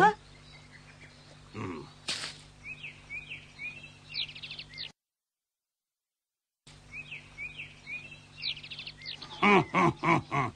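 Birds chirping in quick clusters of short, high twitters, startled by the boys' movements. The sound cuts to dead silence for about two seconds in the middle, and the chirping then resumes.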